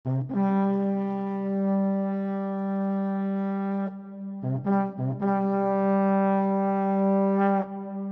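Music: a brass instrument holds one low note for about three and a half seconds, plays three short notes on the same pitch, then holds the note again.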